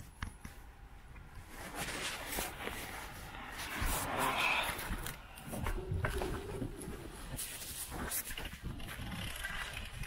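Handling noise from a handheld camera: rustling and scraping with scattered light knocks and clicks, swelling about four seconds in.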